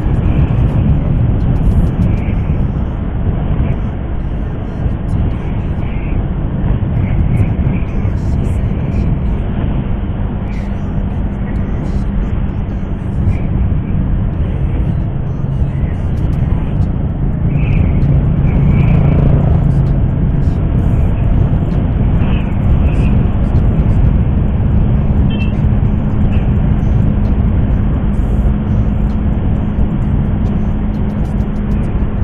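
Wind rushing over a helmet-mounted microphone on a moving motorcycle, with the motorcycle's engine running steadily underneath at cruising speed.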